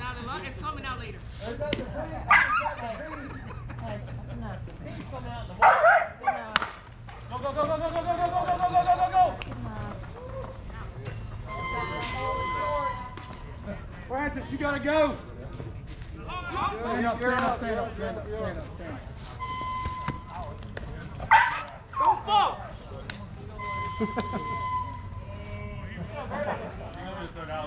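Indistinct shouts and chatter of people across an outdoor ball field, with one long held call and a few short steady high tones now and then.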